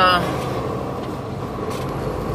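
Steady drone of a semi-truck's diesel engine, heard from inside the cab while the truck moves slowly in traffic.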